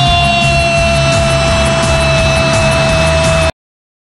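A football commentator's long held goal cry, one sustained high note sliding slowly lower over a steady crowd din, cut off abruptly about three and a half seconds in.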